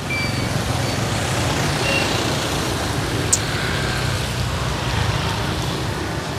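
Street traffic passing close by on a wet road: vehicle engines running low and tyres hissing on the wet asphalt. A brief high chirp about three seconds in.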